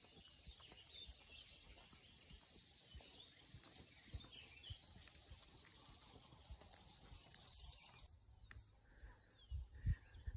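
Near silence outdoors, with faint, sparse bird chirps in the distance and a soft low bump near the end.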